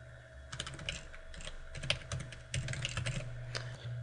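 Computer keyboard typing: a run of quick key clicks in irregular bursts, starting about half a second in, as a web address is typed out.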